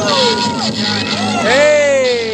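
Hip hop music playing with long, falling shouted cries over it: a short one at the start and a louder, drawn-out one about a second and a half in.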